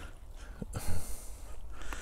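American bully puppy sniffing with its muzzle at the water's edge, with a couple of short, sharp, loud noises about a second in, over a low steady rumble of wind on the microphone.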